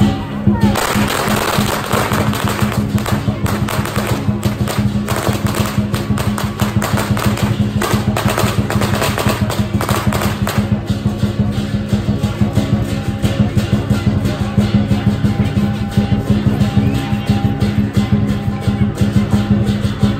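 Lion dance percussion of drum, cymbals and gong beating a steady rhythm. A rapid crackle of firecrackers runs over it for the first ten seconds or so, then stops, leaving the beat alone.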